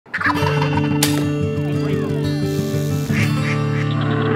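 Wild turkey toms gobbling over intro music with held low notes, with a sharp click about a second in.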